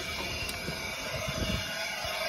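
Steady machinery hum made of several fixed tones, with a sharp click about half a second in and a few low bumps from the phone being moved near the end.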